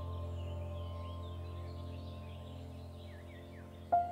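Soft ambient background music: a held, sustained chord slowly fading, with faint bird chirps in the track. A new note strikes just before the end.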